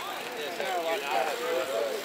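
Several people's voices talking and calling out at the same time, at a moderate level below the nearby shouting.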